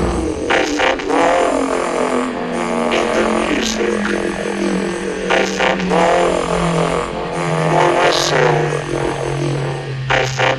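Electronic dance music with repeating wobbling synth sweeps over a long, slowly falling low note.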